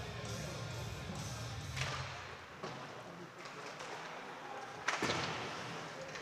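Ice hockey play on a rink: skates on the ice under a steady hum of the arena, with two sharp knocks of stick or puck, about two seconds and five seconds in.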